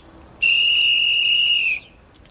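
One loud, long blast on a safety whistle: a steady, shrill high note lasting about a second and a half, dipping slightly in pitch as it stops.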